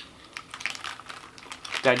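Light, irregular clicks and crinkles of a plastic snack packet being handled.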